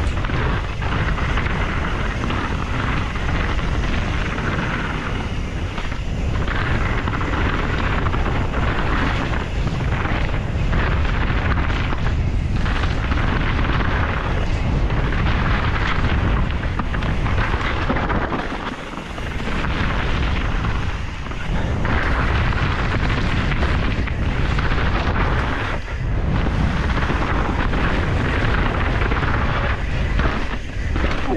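Canyon Strive enduro mountain bike descending a dirt and rocky trail at speed: wind buffeting the handlebar-mounted camera's microphone, with tyres rolling over dirt and loose rock and the bike rattling. The noise eases briefly twice about two-thirds of the way through.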